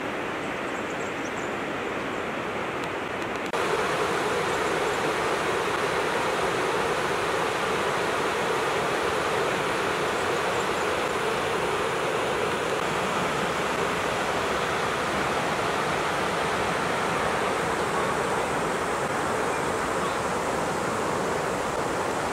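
Steady rush of a shallow river running over stones and gravel rapids, louder after about three and a half seconds.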